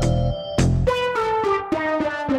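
Background music: keyboard notes stepping down in a descending run over a low, steady beat.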